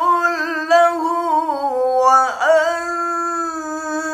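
A man chanting Qur'an recitation in melodic tilawah style: long held vowels with wavering ornaments in a high voice, a quick downward swoop in pitch a little past halfway, then a new held note.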